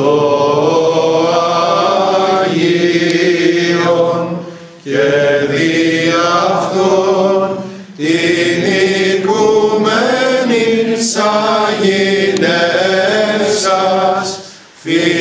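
A group of men chanting a Byzantine Greek Orthodox hymn together, in long sung phrases with short breaks for breath about 5 and 8 seconds in.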